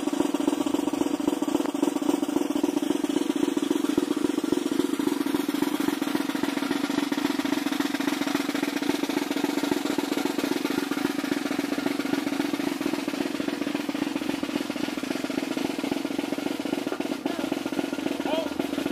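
Snare drum playing a steady, unbroken roll that holds an even loudness throughout.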